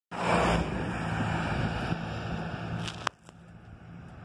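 A van driving past close by on the highway, a steady rush of engine and tyre noise over a low hum that is loudest in the first half second. About three seconds in there is a sharp click, and the sound then drops off sharply.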